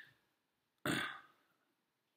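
A single short throat noise from a person about a second in, sudden and quickly fading, with quiet on either side.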